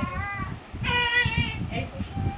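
A young child singing in a high voice: a short phrase, a brief pause, then a longer wavering note.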